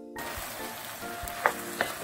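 Sweet soy-and-syrup glaze sizzling and bubbling in a wok around fried burdock strips as a wooden spatula stirs them. The sizzle starts suddenly, and two sharp clacks come about one and a half seconds in.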